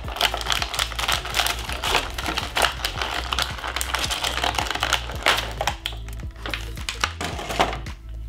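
Clear plastic packaging crinkling and crackling as an action figure is worked out of it by hand, a dense run of small crackles and clicks.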